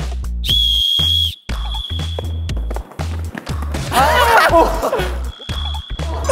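A single whistle blast, a steady high tone just under a second long, about half a second in, signalling the start of the round, over background music with a steady beat. A brief burst of voices comes a few seconds later.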